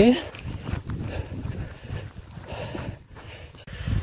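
A runner's footsteps on a grassy field path with an uneven low rumble of movement noise.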